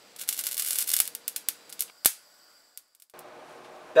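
A small pile of glyoximate salt deflagrating under a torch flame: a short crackling fizz lasting about a second, then a run of sharp pops and clicks, the loudest about two seconds in.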